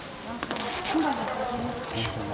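A crowded flock of goats and sheep bleating, several calls overlapping, starting about half a second in.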